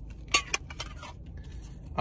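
Two sharp clicks about a third and half a second in, then a few lighter ticks, as the cards and stickers are handled out of a metal Pokémon mini tin.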